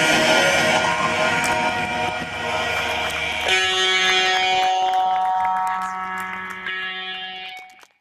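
Amplified noise-rock band's sustained electric guitar drone and feedback tones ringing out as a piece ends. About three and a half seconds in the dense wash gives way to a few steady held tones, which fade and cut off near the end.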